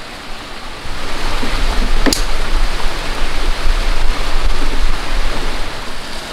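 Wind gusting on the microphone: a loud rushing rumble that swells about a second in and eases near the end, with a single sharp knock about two seconds in.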